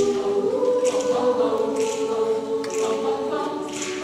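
High school choir singing sustained, held chords, with crisp sibilant consonants sounding together a few times.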